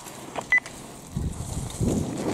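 A single short electronic beep about half a second in, then low rumbling noise near the end.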